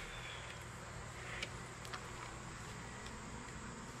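A steel ball-bearing drawer glide rail being slid open by hand: a faint metal sliding sound with a few light clicks about one and a half to two seconds in.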